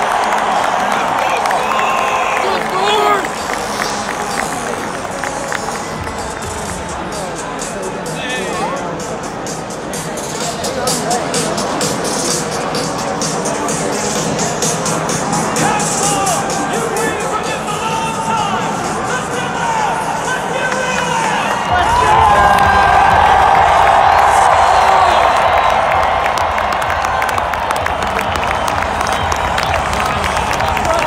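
Large stadium crowd cheering and clapping, with music and a voice over the stadium PA. About two-thirds of the way in a deep rumble sets in and grows louder: military jets of a flyover passing over the open-air stadium.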